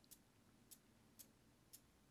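Near silence with four faint ticks, about half a second apart.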